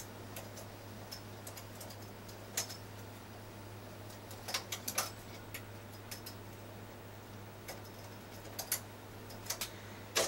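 Scattered light clicks of a metal transfer tool and needles on a Singer 155 flatbed knitting machine as stitches are moved from needle to needle, coming in small clusters, over a faint steady hum.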